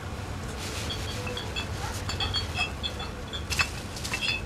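Low steady rumble of a car engine idling, under scattered short high chirps of night insects, with one click near the end.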